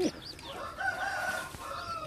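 A drawn-out bird call lasting about a second, starting just under a second in and trailing into a softer second call near the end.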